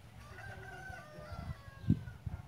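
A rooster crowing, one long call of about a second and a half, with a low thump near the end that is the loudest sound.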